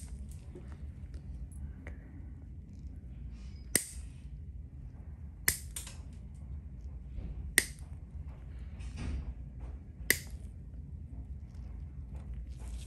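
Stainless steel nail nippers snapping through thick, fungal toenail, about five sharp cracks roughly two seconds apart, one of them doubled.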